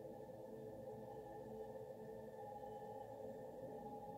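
Soft ambient background music with long held tones.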